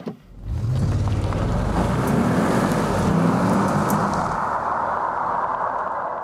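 Audi S8's 4-litre twin-turbocharged V8 under hard acceleration, its deep note rising in pitch, with tyre and wind noise over it; the low engine sound drops away about four seconds in while the road noise carries on.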